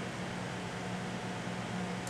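Steady background hiss with a low, even hum underneath: room tone, like an air conditioner or fan running.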